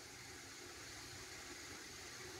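Faint steady background hiss: room tone, with no distinct events.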